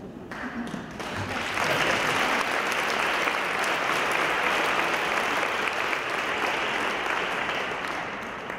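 Audience applauding in a large hall, building up over the first second or two, holding steady, then tapering off near the end.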